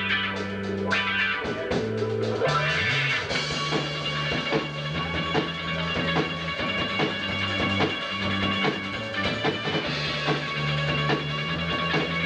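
Live indie rock band playing an instrumental passage: electric bass holding long low notes under electric guitar, with a drum kit keeping time.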